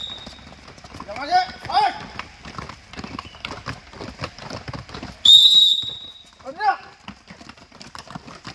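Many footsteps of a group of trainees scuffing and slapping on concrete stairs as they climb in lunging strides. Short shouted calls come about a second in and again near the end, and one high whistle blast, the loudest sound, comes about five seconds in.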